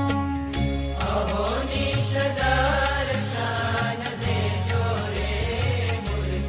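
Swaminarayan kirtan, a devotional hymn: a melodic line with a long held note ending about a second in, then a fuller melody over repeating bass notes and a steady beat.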